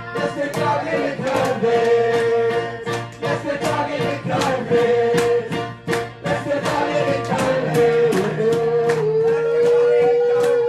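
A live song: singing with long held notes over an electric keyboard accompaniment with a steady beat.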